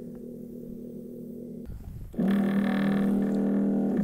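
Electric liquid pump of a foam generator humming steadily as it pushes foam solution through the hose. About halfway in the hum gets much louder and drops a little in pitch.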